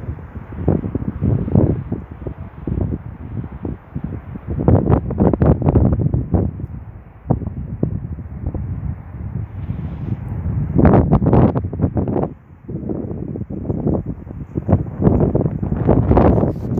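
Wind blowing across the microphone in loud, uneven gusts that swell and drop away, strongest about five seconds in and again around eleven seconds.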